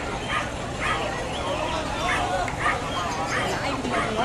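Several puppies yipping and whining in a pen, short high cries coming about twice a second and overlapping.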